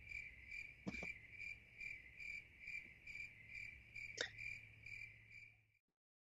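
Cricket chirping faintly, evenly spaced chirps about two a second, with a couple of soft clicks; it cuts off suddenly near the end.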